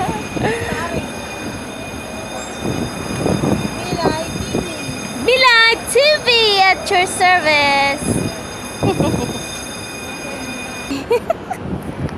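A person's high-pitched voice in several gliding, sing-song calls in the middle, over a steady high whine.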